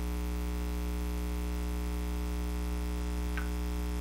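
Steady electrical mains hum with a stack of even overtones, unchanging throughout, and one faint short high blip about three and a half seconds in. The paint pouring itself is not heard.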